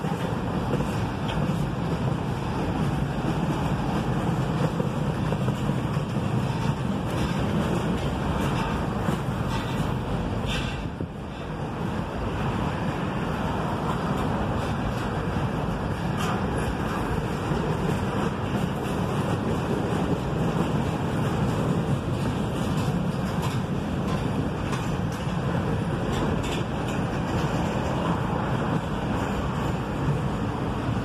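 Boxcars and tank cars of a passing freight train rolling by on the rails: a steady noise of steel wheels on track that dips briefly about eleven seconds in.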